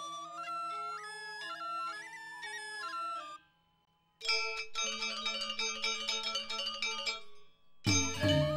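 Balinese gamelan: bamboo suling flutes play a wavering melody over a low steady drone, then break off about three and a half seconds in. After a short silence, bronze metallophones come in with rapid struck notes, and the full ensemble enters loudly at the very end.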